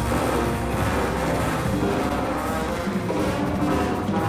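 Big-band jazz orchestra playing live, with the horns over a rhythm section of piano, double bass, guitar and drums.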